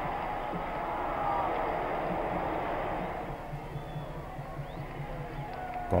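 Stadium crowd noise from a football match, a steady murmur of the crowd that eases off after about three seconds.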